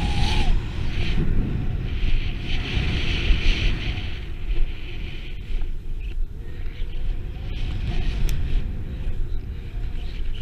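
A snowboard sliding and carving through powder snow, heard with wind rumbling on the action camera's microphone at speed. The hiss of the board in the snow is strongest in the first four seconds and eases off after.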